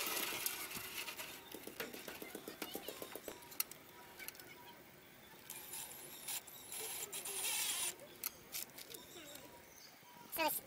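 Cordless drill briefly driving a screw into a wooden gate post about seven seconds in, among scattered clicks and knocks of handling the drill and mounting hardware.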